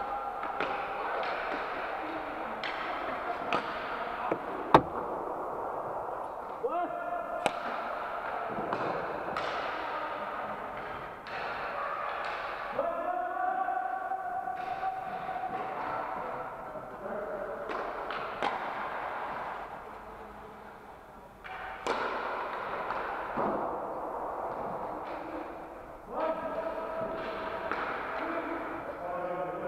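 Inline hockey play in a large sports hall: sharp, irregular clacks of sticks and puck, the loudest about five seconds in. Players' calls and shouts sound out now and then over the ongoing rink noise.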